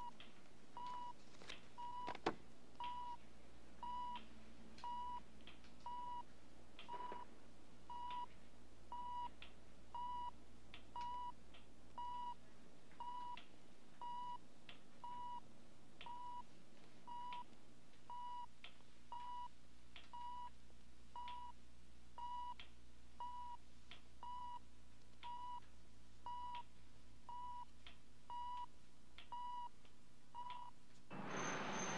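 Hospital bedside patient monitor beeping steadily with each heartbeat, short evenly spaced electronic beeps at one pitch, somewhat more than one a second. A single sharp click sounds about two seconds in.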